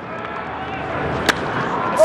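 Crack of a wooden baseball bat meeting a pitched fastball, a single sharp hit about a second and a half in, over steady ballpark background noise. It is solid contact that drives the ball deep for a first-pitch home run.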